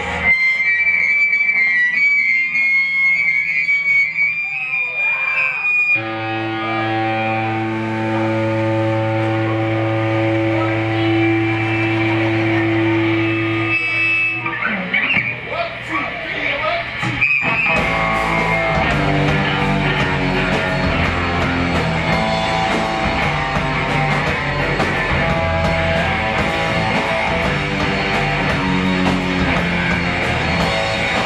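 Live rock band with distorted electric guitars starting a song: first a high held guitar note, then a long ringing chord, and about two-thirds of the way through the drums and the full band come in with a steady beat.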